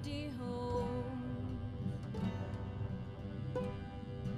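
Acoustic indie-folk band playing live: acoustic guitar with bass under held melody notes, a sung phrase trailing off right at the start.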